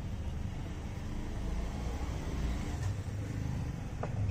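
A steady low mechanical rumble in the background, with no distinct knocks or tool contact.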